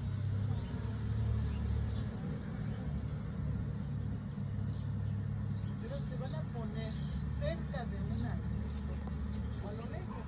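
A steady low rumble, with faint voices coming in during the second half.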